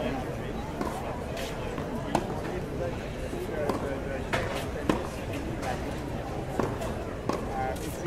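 Tennis balls being hit with rackets and bouncing on a hard court during a practice rally: sharp pops at irregular intervals, the loudest about two and about five seconds in, over people talking in the background.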